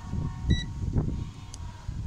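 Handling noise of multimeter probes held against the terminals of a push-button switch contact block: uneven low rumble and light knocks. A faint steady tone runs underneath, with a brief higher beep about half a second in.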